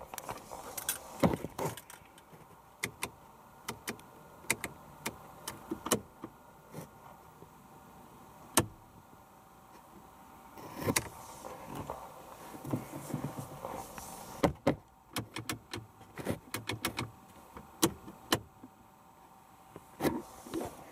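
Irregular sharp clicks, well over a dozen spread through the time, from the dashboard switches and buttons of a 2000 Toyota Yaris being pressed while the light switch and display brightness are worked, with brief rustling in between.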